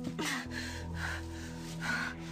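A woman gasping and panting in distress, short breaths about once a second, over sustained dramatic underscore music with a low steady drone.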